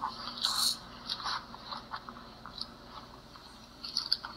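Handling noise of a recordable picture book: a short rustle as a page is turned, then scattered small clicks and scrapes.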